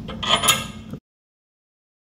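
Light metallic clinks of a bolt and washer against a sway bar link and its frame bracket as the bolt is fitted, over about the first second. Then the sound cuts out completely.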